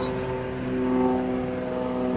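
A steady mechanical hum made of several held tones, unchanging throughout.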